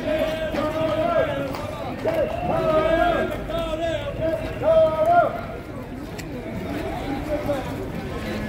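Distant protesters chanting, raised voices in long held, falling calls without clear words, loudest about five seconds in and then fading.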